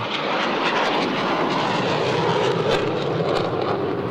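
Eurofighter Typhoon jet fighter with twin EJ200 turbofans passing overhead in a display flight: a steady jet rush whose pitch sinks slowly.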